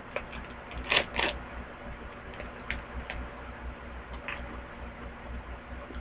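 A female condom's wrapper being torn open and the condom pulled out: a few soft crackles and rustles, the two loudest about a second in, then scattered fainter ones.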